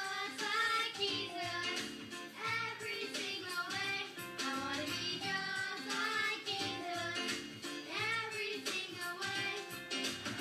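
A group of young children singing a song together with musical accompaniment, played back through a television's speaker.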